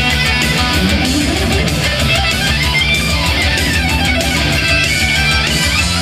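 Heavy metal music led by electric guitar, with notes sliding up and down in pitch a second or two in.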